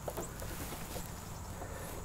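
Quiet outdoor background: a low steady haze of noise with a faint high steady tone and a few soft, faint ticks.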